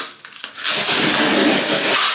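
Tape being ripped off a small cardboard shipping box to open it: a steady rough tearing and scraping that starts about half a second in.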